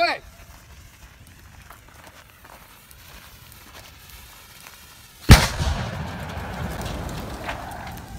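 A gasoline fire burning low. About five seconds in, the gasoline-filled water-cooler jug explodes in one sharp, loud blast, followed by a few seconds of rushing fireball noise that slowly fades.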